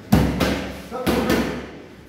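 Boxing gloves striking focus mitts: four sharp punches in two quick pairs, the second pair about a second after the first.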